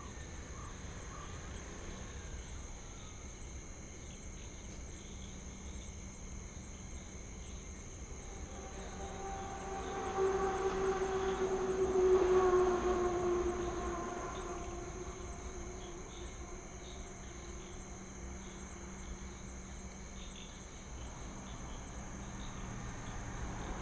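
Crickets chirring steadily throughout. From about eight seconds in, a vehicle approaches and passes by. Its engine tone is loudest about twelve seconds in, then drops slightly in pitch and fades away.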